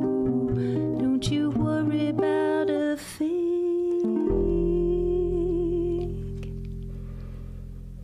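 Ukulele and double bass playing a quick closing phrase, then a final held chord with a deep double bass note that rings on and slowly fades away.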